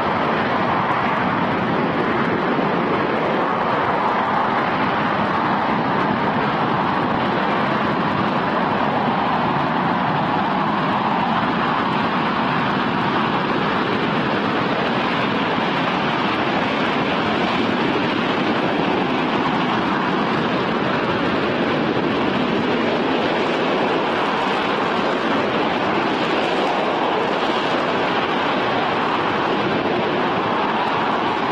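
RS-25 liquid-hydrogen/liquid-oxygen rocket engine firing steadily in a hot-fire test: a constant, unbroken rush of noise that neither rises nor falls.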